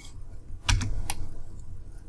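A few clicks of a computer keyboard and mouse, about three in quick succession around a second in, with a low bump under the first.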